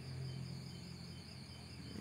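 Crickets chirping in a steady, continuous trill behind a low, steady hum.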